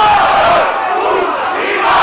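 Crowd of spectators shouting and yelling together, many voices at once, with a louder swell near the end.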